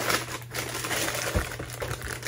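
Cereal box and its plastic liner bag being handled, the plastic crinkling continuously, with a low bump about one and a half seconds in.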